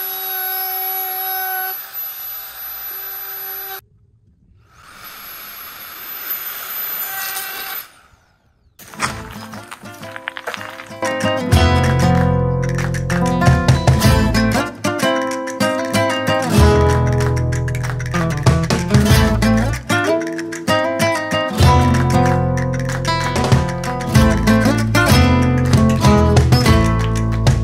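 A handheld power tool trimming the edges of the lifeboat's cockpit for fibreglassing, running with a steady whine in two runs of about four seconds each. From about nine seconds in, acoustic guitar music with a beat takes over.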